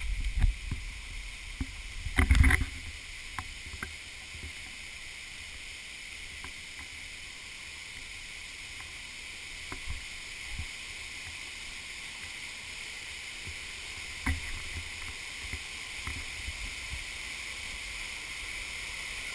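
Waterfall rushing steadily over rock, an even hiss of falling water. A few low bumps in the first three seconds, the loudest about two seconds in, and one more later on.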